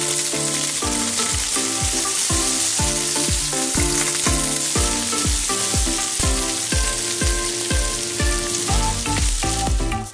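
Food sizzling loudly in hot olive oil in a nonstick wok, first minced garlic, then meat frying as it is seasoned. Background music with a steady beat plays underneath, and the sizzle stops at the end.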